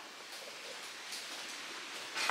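Light rain falling, an even hiss with a few faint taps.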